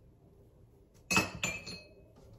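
Dishware clinking: two sharp clinks a few tenths of a second apart about a second in, then a lighter one, each with a brief ring.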